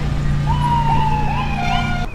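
A siren sounding one long, slowly falling wail that begins about half a second in, with a few short chirps, over steady wind and road noise from riding.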